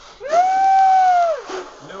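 Balloons being blown up hard by mouth, a breathy rush of air. A single high note is held steady for about a second over it, rising at its start and falling away at its end.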